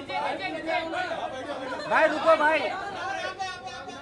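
Chatter of several voices talking and calling out over one another: photographers shouting to the person they are shooting.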